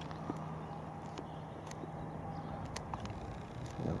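Faint steady outdoor background noise with a low hum that fades out about halfway through, and a few light scattered clicks.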